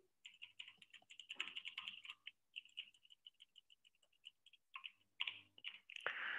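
Faint typing on a computer keyboard: quick runs of soft keystroke clicks, with a short pause after about four seconds.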